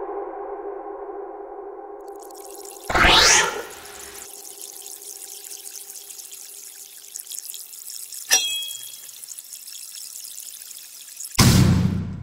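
Horror sound design: a held synth drone fades out under a steady hiss, then a rising whoosh about three seconds in, a short sharp hit near the middle, and a loud, deep boom with a lingering tail near the end.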